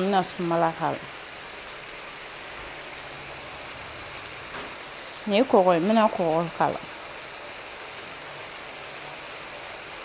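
Steady sizzle of food frying in a pan. A voice speaks briefly at the start and again about five seconds in, louder than the sizzle.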